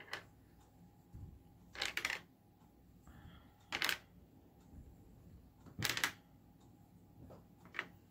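Small hard plastic clicks of acrylic heart gems being picked off a wooden letter and set down on a tabletop: a few sharp taps spread out, roughly two seconds apart.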